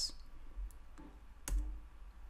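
A single sharp click about one and a half seconds in, the click that advances a presentation slide, with two faint ticks before it over low room noise.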